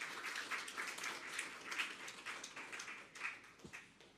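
Audience applauding, a steady patter of many hands that dies away near the end.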